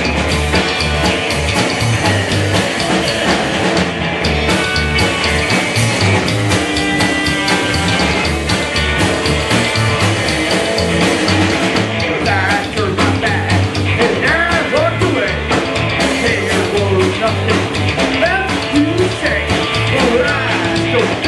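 A rockabilly trio playing live: electric guitar, upright double bass and drum kit, loud and steady. About twelve seconds in, a wavering, sliding line comes in above the band.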